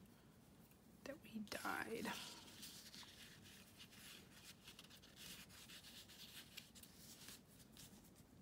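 Faint rustling and scratchy rubbing of loose-weave craft mesh as hands pull it apart and work it onto a paper journal card, with a brief louder rustle about a second in.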